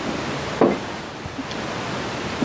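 Steady broad hiss of background noise, with a short voice sound, such as a brief laugh or exclamation, about half a second in.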